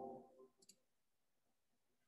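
Near silence: a ringing tone fades out in the first half second, then a faint click comes about two-thirds of a second in.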